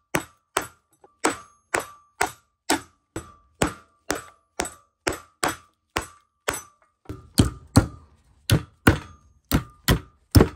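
Steel claw hammer driving nails through a climbing rope into a wooden two-by-four: steady blows about two a second, each with a short metallic ring. About seven seconds in, the blows turn heavier and duller.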